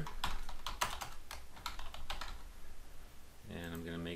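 Typing on a computer keyboard: a quick run of key clicks that thins out after about two seconds.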